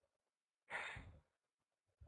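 Near silence broken by a single short breathy sigh close to the microphone, just under a second in.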